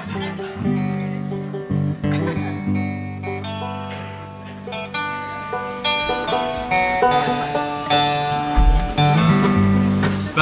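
Acoustic string-band instruments, guitar and banjo among them, being plucked loosely between songs: held low notes at first, then scattered notes and short strums with no steady beat, as the players tune and noodle before starting.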